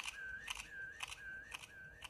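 Faint electronic sound effect from a TV soundtrack: a short tick followed by a thin whistling tone that dips slightly in pitch, repeating about twice a second and slowly fading.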